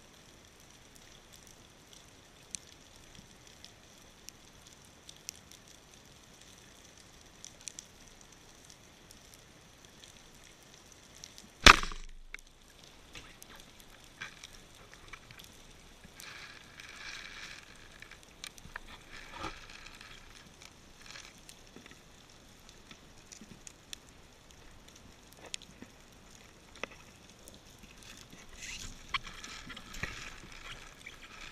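Band-powered speargun fired underwater: one loud sharp crack about twelve seconds in, the shot that spears a dentex. Later there are scattered clicks and crackles over a faint underwater hiss.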